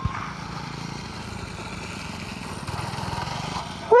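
Small mini go-kart engine running as the kart drives across dirt, a steady rapid pulsing that gets a little louder near the end.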